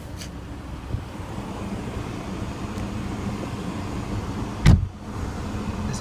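Volvo V60 2.4 D5 five-cylinder diesel idling, heard from inside the cabin as a steady low rumble. A single dull thump comes about three-quarters of the way through.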